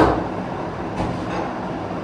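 A sharp knock right at the start, then the steady hum of a fan running.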